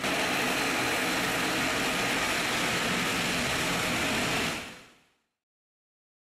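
Turboprop engines of a Dash 8-400 (Q400) airliner running as it taxis: a steady rush of propeller and engine noise that fades out about four and a half seconds in.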